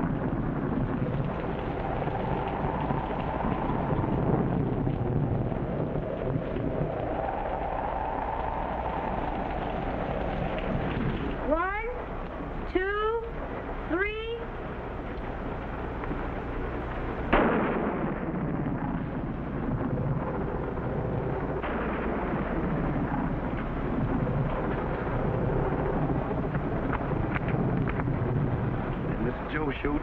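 Heavy rain pouring steadily, with a low storm rumble underneath. A little before the middle there are three quick rising, voice-like wails, and a few seconds later one sudden sharp burst.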